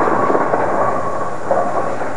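Bowling pins crashing and clattering after the ball hits them, with a rattling rumble that swells again about one and a half seconds in.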